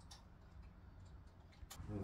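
Quiet room tone with two faint clicks about a second and a half apart; a voice starts right at the end.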